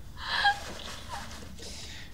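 A short breathy gasp of excitement, about half a second in.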